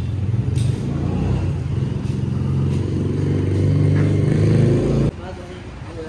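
Low rumble of a motor vehicle engine running close by, which stops abruptly about five seconds in.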